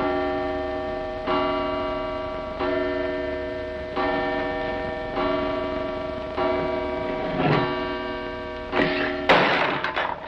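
Mantel clock striking, a chime of one pitch struck about eight times, a little over a second apart, each stroke ringing and fading before the next. Near the end a loud crash cuts in as things on the mantelpiece are knocked over.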